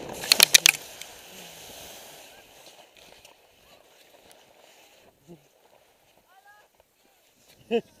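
A skier's crash recorded on a helmet camera: a quick run of sharp knocks about half a second in as the camera and skis hit the snow, then a hiss of sliding snow that fades out within a couple of seconds. Brief faint voice sounds follow near the end.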